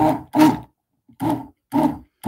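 A woman laughing out loud: four short, evenly spaced bursts, about two a second.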